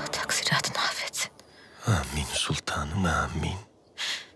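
Hushed, whispered speech in two short stretches, with a brief pause between them.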